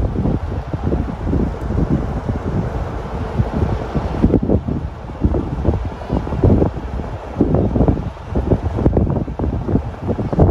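Wind buffeting the camera microphone: loud, low, irregular gusts with no steady tone.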